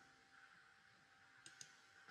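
Near silence, with a faint double click of a computer mouse about one and a half seconds in.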